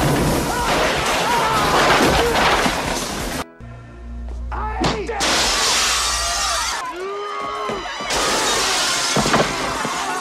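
Plate-glass shop window shattering as a man crashes through it, about five seconds in, with a second burst of breaking glass near the end. A film score and shouting voices run under it.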